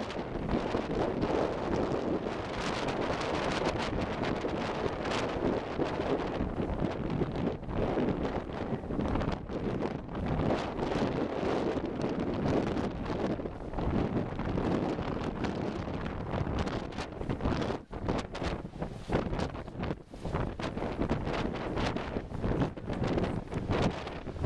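Strong, gusty wind blowing across the microphone, its level rising and falling with the gusts and dropping out briefly twice near the end, with breaking surf rushing underneath.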